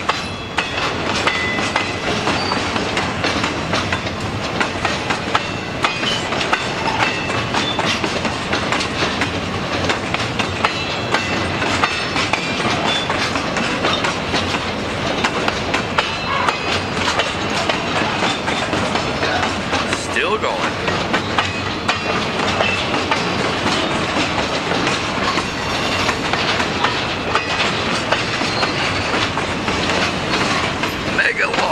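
Freight train of empty log flatcars rolling steadily past: a continuous rumble and rattle of the cars, with a quick run of wheel clicks and clacks over the rail joints.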